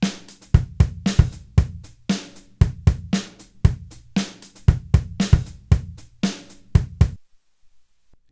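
A recorded drum-kit loop at 116 bpm playing back and repeating: kick, snare, hi-hat and cymbal hits in a steady beat. It cuts off suddenly about seven seconds in.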